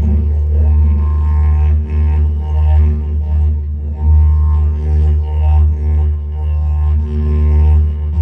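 Didgeridoo playing a continuous low drone with shifting overtones and a pulsing rhythm.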